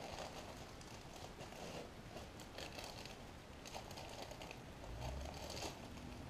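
Faint crinkling of clear plastic bags of small ceramic tiles being handled, with scattered light clicks.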